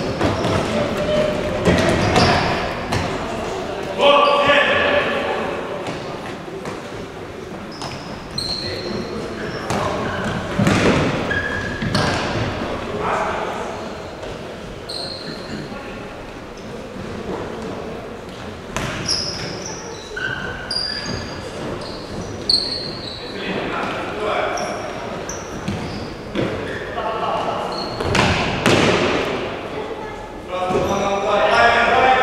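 Futsal ball being kicked and bouncing on a wooden sports-hall floor, with repeated sharp thuds, players shouting and short high squeaks of shoes on the floor, all echoing in a large hall.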